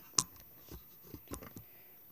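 Handling noise: one sharp click, then a few faint taps.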